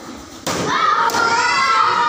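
A sharp smack about half a second in, typical of a kick landing on a handheld taekwondo kick paddle, followed at once by a long, high shout from a young voice.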